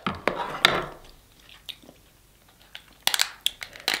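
King crab leg shell cracking and crunching as it is broken open by hand: a few sharp snaps in the first second, then a quick cluster of cracks near the end.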